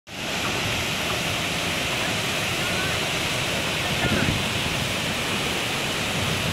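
Muddy floodwater rushing steadily down a hillside, a torrent released by a water burst at a hydroelectric project, with faint voices over it.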